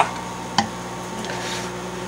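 Microwave oven running with a steady hum, with one light click about half a second in.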